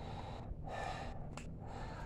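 A man breathing quietly: a soft breath about half a second in and another near the end.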